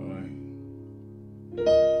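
Piano chords: a held D-flat chord, the resolution of the progression, fades away, then a new chord is struck about one and a half seconds in.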